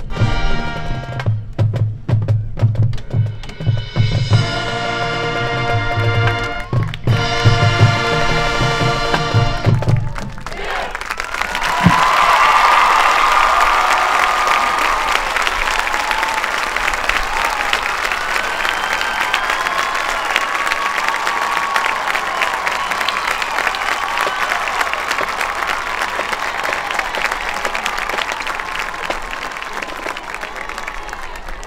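A marching band's brass and drums play the loud closing chords of its show, cutting off about ten seconds in. A crowd then applauds and cheers for the rest of the time.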